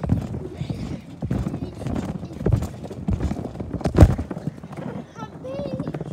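Irregular knocks and thumps from a handheld phone being jostled and handled close to its microphone, with the loudest thump about four seconds in.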